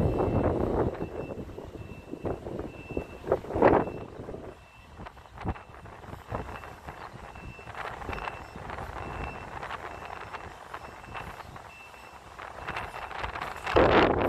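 A truck's backup alarm beeping at a steady pace as the truck carrying a PODS container reverses down the street. Wind buffets the microphone at the start and again near the end.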